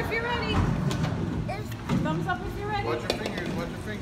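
Several people's voices talking in the background over a steady low rumble, with a few short sharp knocks.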